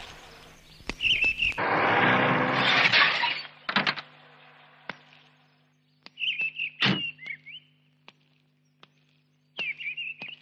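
Birds chirping in short warbling calls, with several sharp knocks and one louder thunk about seven seconds in. A rushing noise fills the second and third seconds, and a faint steady hum runs underneath.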